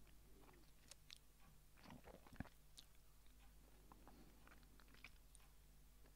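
Near silence: faint room tone with a few scattered soft clicks, the clearest about two and a half seconds in.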